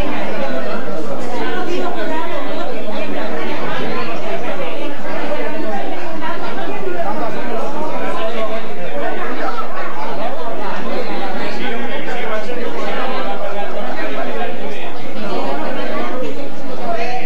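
Many people talking at once around tables: a steady hubbub of overlapping conversation in a room, with no single voice standing out.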